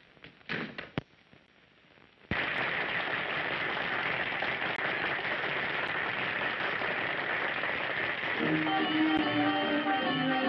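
A few faint clicks in near-quiet, then a sudden loud, steady wash of noise about two seconds in. Near the end, a dance band with brass starts playing swing-style music over it.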